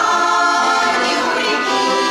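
A Russian folk vocal group singing in chorus, accompanied by a button accordion.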